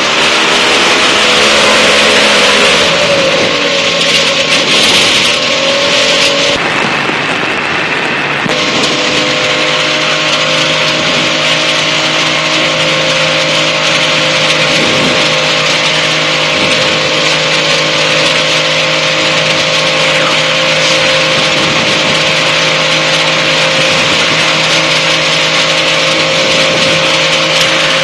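Liquid-cooled engine of a Challenger light-sport aircraft running at low power, over a steady hiss. Its pitch wavers up and down for the first several seconds, then holds steady.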